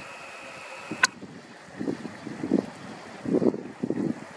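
Outdoor wind buffeting the microphone in gusts, loudest around the middle and near the end, with a single sharp click about a second in.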